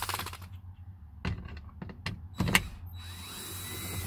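DeWalt 20V cordless drill/driver backing screws out of a plastic van door handle: a few sharp clicks and knocks, the loudest about two and a half seconds in, then the motor runs with a rising whine for about the last second.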